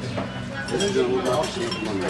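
Dining-room din: cutlery and dishes clinking under people's chatter, with a couple of brief bright clinks.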